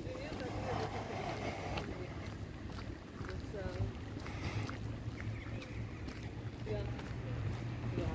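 Wind rumbling on a handheld camera's microphone while walking outdoors, a steady low buffeting, with faint short calls or voices in the background now and then.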